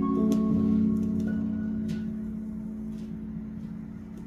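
Soundtrack music playing from a vinyl record, its last notes ringing out and fading away, with a few faint surface clicks from the record showing as the music dies down.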